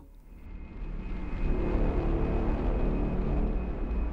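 Cinematic logo-intro sound effect: a deep rumble that swells up over the first second or so and then holds steady, with a faint high tone running above it.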